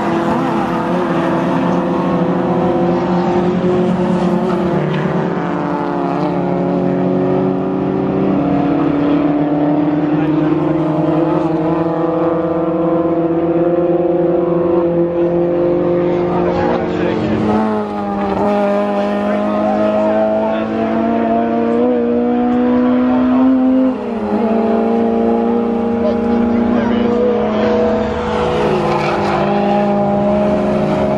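Engines of several race cars circulating together on a circuit, a continuous mix of engine notes whose pitches slowly rise and fall as the cars pass. The level dips briefly twice, a little past halfway and again later, as the engine pitch drops sharply and climbs again.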